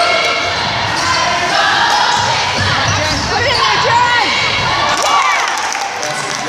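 A basketball dribbled on a hardwood gym floor, with high squeaks from sneakers and the overlapping voices and shouts of players and spectators.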